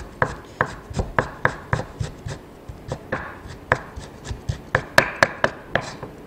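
Chef's knife cutting thinly sliced beef into fine strips on a wooden cutting board, the blade knocking the board about four times a second, with one louder strike about five seconds in. The strips are cut thin so the beef will mince easily afterwards.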